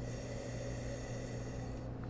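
Steady low electrical hum with faint high-pitched overtones: mains hum and room tone of the recording setup.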